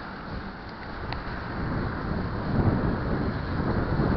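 Wind buffeting an action camera's microphone on a moving bicycle, with low rumble from the tyres on asphalt; the rumble grows louder about halfway through.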